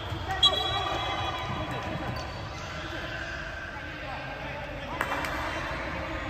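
Basketball game sounds in a gym: indistinct players' voices with a basketball bouncing on the hardwood court, two sharper thuds about half a second in and near the end.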